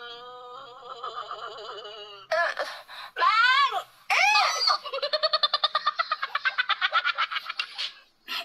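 A high-pitched voice: a long wavering wail, then a few rising-and-falling cries, then a fast run of short laugh-like pulses for the last three seconds.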